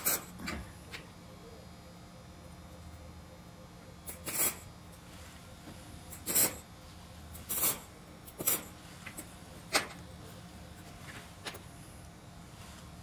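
MIG welder striking short tack welds on square steel tubing: about seven brief bursts, spaced irregularly a second or two apart, over a faint low hum.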